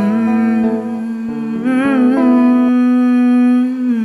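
A young male singer holds one long wordless note to close the song, sliding up into it, with a short vibrato in the middle. Held backing chords, likely guitar, sound under the note and stop partway through, leaving the voice alone until it ends just before the close.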